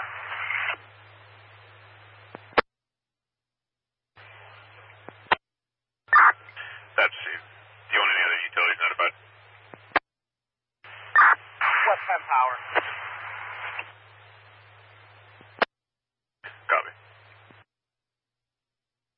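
Fire-department radio traffic over a scanner: four or five short transmissions of tinny, narrow-band voices too garbled to make out. Each ends with a sharp squelch click, a low hum sits under the voice while the channel is open, and there is dead silence between.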